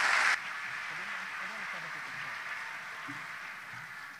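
Audience applauding after a speech, dropping abruptly in level shortly after the start and then fading away, with faint indistinct voices underneath.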